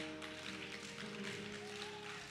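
Quiet background music of soft, sustained keyboard chords, moving to a new chord a little over a second in.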